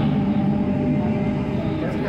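Delhi Metro train running at speed, heard from inside the carriage as a steady rumble of wheels on track with a low, even hum.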